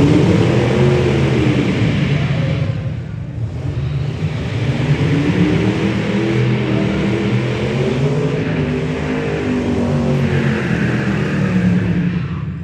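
Hot rod engine revving hard during a burnout, its pitch swinging up and down, with a short lift about three seconds in before it winds up again. Near the end a hiss from the spinning rear tyres rises over the engine.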